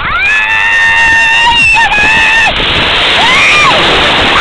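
A child's long, high-pitched scream held for about two and a half seconds, then a shorter rising-and-falling shout, as a big sea wave comes in. The rush of the breaking wave grows louder in the second half.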